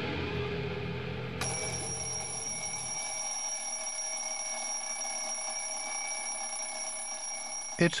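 Music fades out over the first few seconds. About a second and a half in, a steady held tone made of several pitches comes in suddenly and stays unchanged. Just before the end, a mechanical twin-bell alarm clock bursts into ringing.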